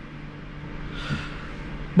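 Steady low background hum, with a brief soft hiss about halfway through.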